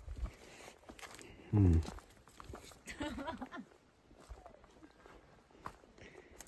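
Faint footsteps on a dirt path, with a short vocal sound about a second and a half in and faint voices around three seconds in.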